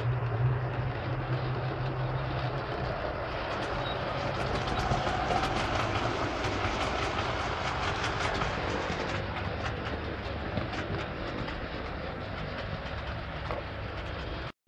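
OO gauge model train running along the track, its wheels clicking over the rail joints with a low motor hum at first. The running noise is loudest in the middle and eases off after about nine seconds as the train moves away.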